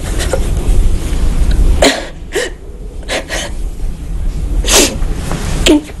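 A woman crying: several sharp sniffs and sobbing breaths, spaced a second or so apart.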